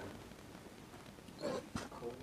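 Mostly quiet room tone with a faint, short animal call about one and a half seconds in, followed by a light click.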